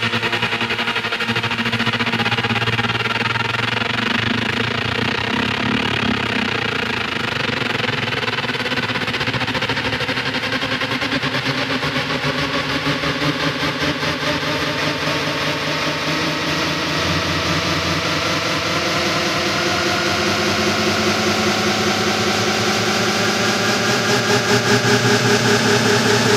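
Trance music: a sustained buzzing synth chord that grows gradually brighter through the passage, building up, and swells slightly louder near the end.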